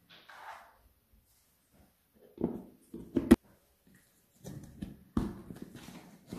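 Plastic food-storage container being handled and its snap-on lid pressed shut: soft knocks, a sharp plastic click about three seconds in, then a run of knocks near the end.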